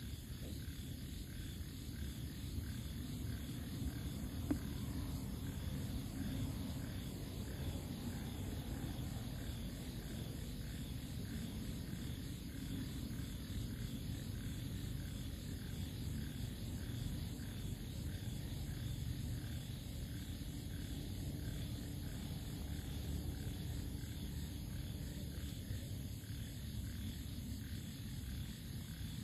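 Outdoor night ambience: a steady low rumble with faint, steady night insects calling high above it. There is one small click a few seconds in.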